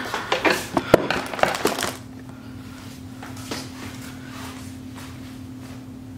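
Handling noise as a camera is moved and set down: a run of rustles and knocks with one loud knock about a second in, stopping after about two seconds. After that only room tone with a steady low hum remains.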